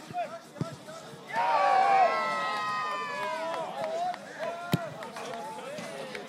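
Several men shouting loudly at once for about two seconds. About three-quarters of the way through comes a single sharp thud of a football being struck.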